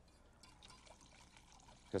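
Red wine poured from a bottle into a saucepan of sauce, heard faintly and starting about half a second in, with a wire whisk stirring in the pan.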